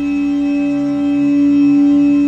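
A voice's 'eee' vowel frozen and held as one unchanging, buzzy electronic-sounding tone with a stack of overtones, a stretched-sample edit effect.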